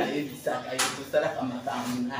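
One sharp slap a little under a second in, with a smaller one just after, amid a woman's excited talking and laughter.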